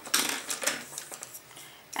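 Light clicks and rustling from handling a jar of black acrylic paint and a paintbrush on a worktable, mostly in the first second and then dying away.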